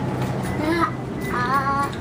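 A toddler's voice vocalising in a sing-song way: a short call, then a longer wavering, held sound about halfway in.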